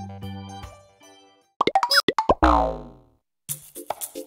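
Background music fades out. Then comes a quick run of cartoon plop sound effects and one long falling boing-like slide. A new tune starts near the end.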